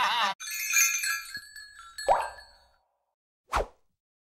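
A short TV network logo sting: tinkling chime-like tones ring and fade, with a swoosh about two seconds in, then a single short pop near the end. Before it, music and laughter cut off abruptly right at the start.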